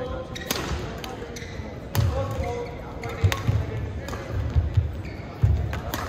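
Badminton rally: shuttlecock struck by rackets with sharp cracks about every second, among thudding footfalls and brief shoe squeaks on the court.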